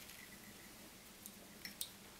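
Near silence at a fly-tying vise, broken near the end by a few faint, sharp clicks of small tools being handled.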